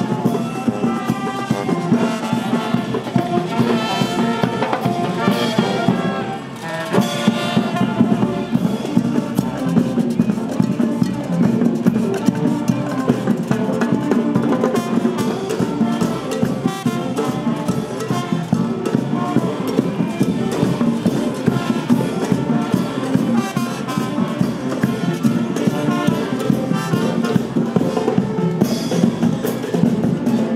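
Marching show band playing brass (trumpets, trombones, sousaphones) with drums, a continuous piece with a short break about six seconds in.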